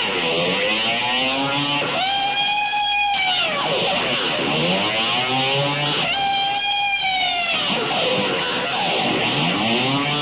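Electric guitar in a spacey rock jam: a long held note comes back about every four seconds, and between its returns a slow whooshing effect sweeps down and up through the sound.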